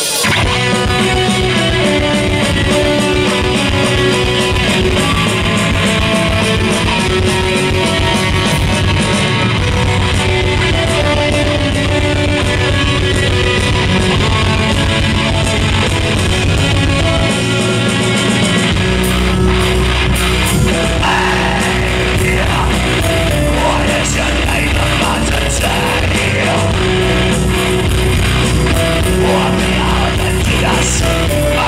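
Melodic death metal played live on stage: distorted electric guitars and keyboards over a drum kit. About two-thirds of the way through, the low end fills out and the band comes in heavier.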